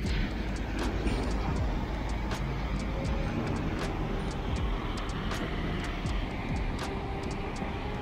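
Steady low rumble of city traffic, with background music.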